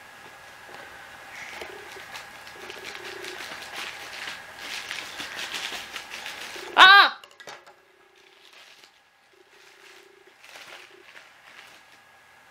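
Plastic parcel packaging crinkling and crackling as it is handled and torn open. About seven seconds in, a short, loud, high voiced call rises and falls once in pitch, and the rest is quiet.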